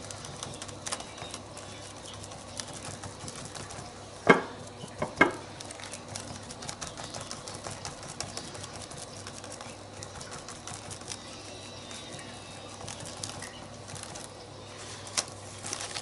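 Sponge tool dabbing black acrylic paint through a plastic stencil onto a journal page: a quiet, continuous run of small dabs and rustles. Two sharper knocks come about four and five seconds in.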